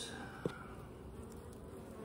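Honeybees buzzing around an open hive, a steady faint hum, with one light click about half a second in.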